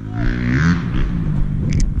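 Pickup truck engine idling with a steady, low-pitched sound.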